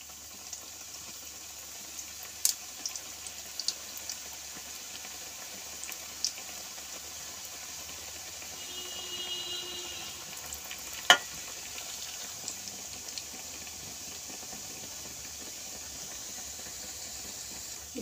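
Coconut-filled puli pitha dumplings frying in hot oil in a pan: a steady sizzle with a few scattered pops and one sharp click about eleven seconds in.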